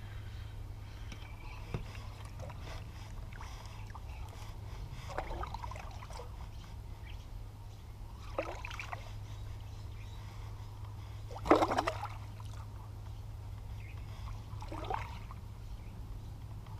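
Several short, light splashes on a creek's surface a few seconds apart, the loudest about eleven and a half seconds in, over a steady low hum.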